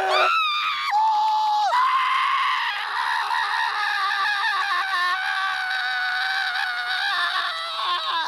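A cartoon boy's voice screaming in terror. It gives a few short, gliding shrieks in the first two seconds, then one long, high, wavering scream that breaks off at the end.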